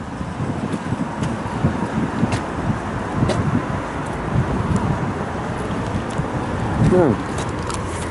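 Steady noise of road traffic from passing cars, with a few faint clicks.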